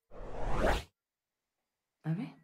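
Whoosh sound effect of a live-stream scene transition, swelling louder and higher for under a second and then cutting off suddenly.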